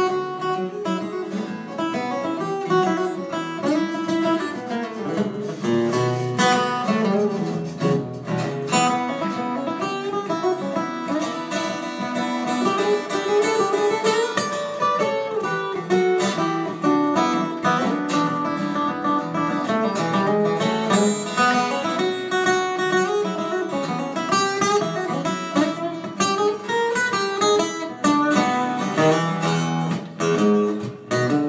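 Two Martin steel-string acoustic guitars played live together in an instrumental duet, with busy picked notes over chords.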